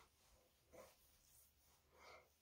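Near silence: room tone, with one faint brief sound a little under a second in.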